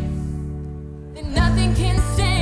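Live worship band music: a held low chord fades for about a second, then the full band comes back in with singing about one and a half seconds in.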